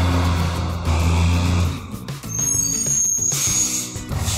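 Truck sound effect: a steady low engine rumble as the car carrier drives in, then a high brake squeal and a hiss of air near the end as it stops, over background music.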